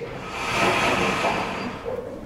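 A sliding chalkboard panel being pushed along its track, giving a rolling, scraping rumble for about a second and a half.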